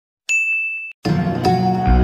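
A single bright electronic ding sound effect, one steady high tone held for about two-thirds of a second before it cuts off. About a second in, background music starts, and a deep bass comes in near the end.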